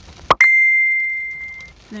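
A single ding: a sharp click, then one clear high ringing tone that fades out over about a second and a half.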